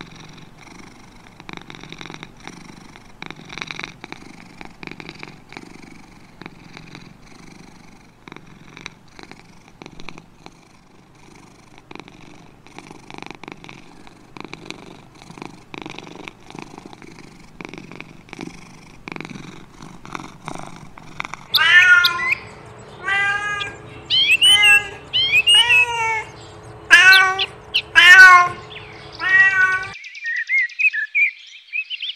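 Domestic cat purring, a low rhythmic pulsing. About two-thirds of the way through it gives way to a rapid series of loud, high kitten meows, each rising and falling, over a faint steady hum.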